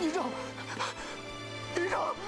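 A man calling out "营长" (battalion commander) in distress, twice, over background music with long held notes.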